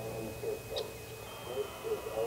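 A lull in an outdoor warning siren's voice test message: a faint, distant voice announcement with a thin steady high tone behind it.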